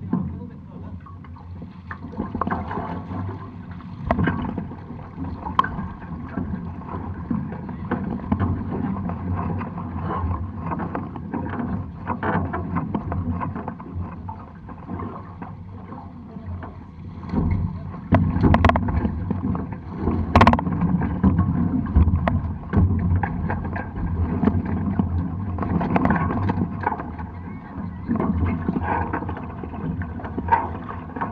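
Low, uneven wind and water noise on a camera mounted on a Hobie 16 catamaran sailing in light wind, with a few sharp knocks.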